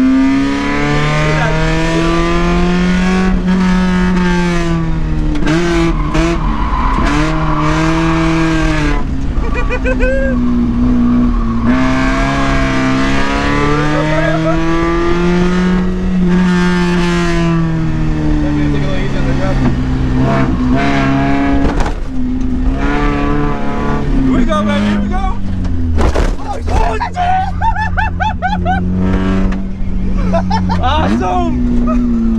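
Mazda Miata's 1.6-litre four-cylinder engine heard from inside the cabin on a rallycross run, its pitch climbing and dropping again and again as the driver accelerates, shifts and lifts through the course.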